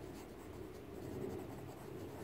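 Pencil writing a word on a paper textbook page: faint scratching of the pencil lead across the paper.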